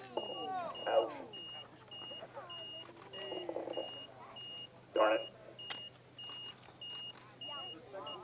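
A high-pitched electronic beep repeating about twice a second, with faint voices in the background and a sharp click about five seconds in.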